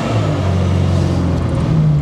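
ZAZ Tavria's 1100 cc engine running steadily as the car drives, heard from inside the cabin as a low drone over road noise, a little louder near the end.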